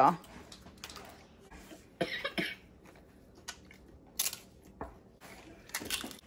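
A few short crisp crunches as a child bites into a salsa-dipped tortilla chip, one at about two seconds in, one at about four seconds and one near the end.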